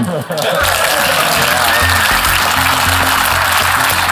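Audience applause filling the hall, with background music joining about half a second in, carried by a steady low bass line.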